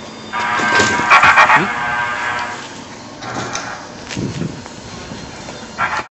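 Subway station noise with a loud, high-pitched metallic squeal, typical of train wheels or brakes on the rails, lasting about two seconds from half a second in, then a lower rumble of station noise.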